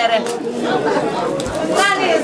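Crowd chatter: many people talking at once, with a woman's voice among them.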